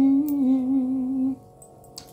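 A woman humming one long held note of a gospel tune, wavering a little in pitch, that stops just past a second in.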